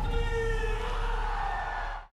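Sound-design tail of a cinematic impact: a low rumble under a ringing, slightly wavering chord of tones, fading slowly and cut off abruptly at the very end.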